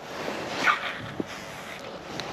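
Wind rustling on a body-worn camera microphone out on open water, with handling noise from the angler. There is a brief falling squeak under a second in and a single click about a second in.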